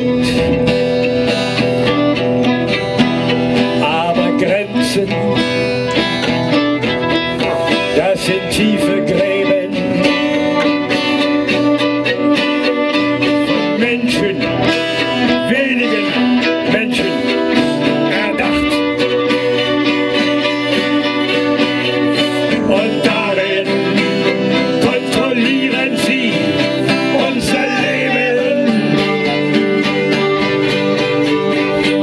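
Two fiddles and an acoustic guitar playing an instrumental passage of a folk song live, the fiddles carrying the melody over the guitar's accompaniment.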